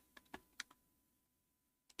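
Near silence with a few faint computer keyboard clicks, four within the first second and one more near the end.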